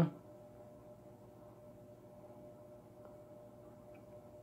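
Quiet room tone with a faint, steady hum.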